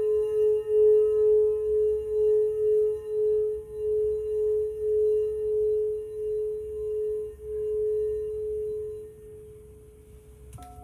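Crystal singing bowl ringing one sustained tone that wavers in slow pulses and fades away about nine seconds in.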